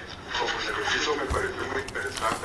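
A person speaking, asking a question of the lecturer, heard over the videoconference link.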